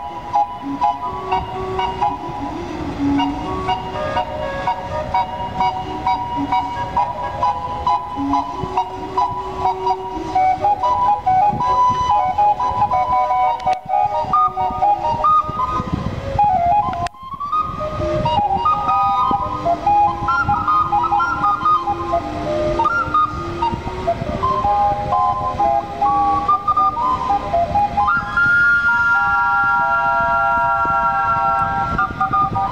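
The Minne Ha Ha paddle-wheel steamboat's steam calliope playing a tune, its steam whistles sounding a melody of stepped notes. There is a brief break a little past halfway, and near the end it holds a chord.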